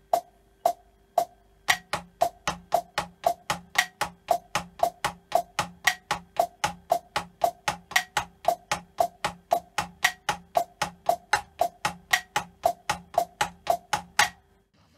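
Drumsticks playing a slow, even double stroke roll on a rubber practice pad, about four strokes a second, with the second stroke of each double accented. The accents train the player to make the second stroke of a double as loud as the first. A few sparse clicks come first, and the roll starts about a second and a half in.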